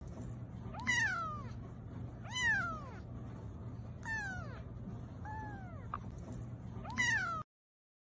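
A young kitten meowing five times in high-pitched calls that each rise and then fall. The sound cuts off suddenly near the end.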